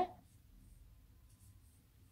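Faint rustle of a crochet hook drawing angora-blend yarn through stitches, barely above a low steady room hum. The end of a spoken word is heard at the very start.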